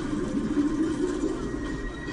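Soundtrack of a presentation video playing over an auditorium's loudspeakers: a steady, muffled blend of music and low rumble, heard through a phone microphone in the hall.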